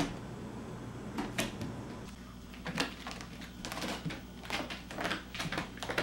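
A cat's claws catching and scratching on the carpet-covered post and platforms of a cat climbing tree as it climbs: a few scattered scratchy clicks at first, then a quick irregular run of them from about halfway through.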